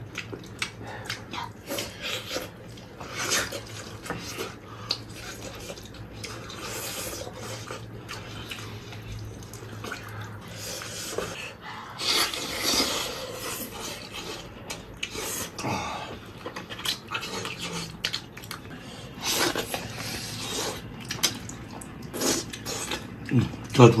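Close-miked eating sounds: wet chewing, sucking and lip smacking as braised pig trotters are gnawed off the bone, in an irregular run of short smacks and clicks.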